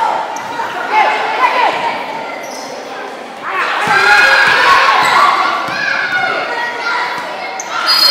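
Live court sound of an indoor basketball game: a basketball bouncing on the court, with players and spectators calling and shouting in a large hall. It grows louder about three and a half seconds in.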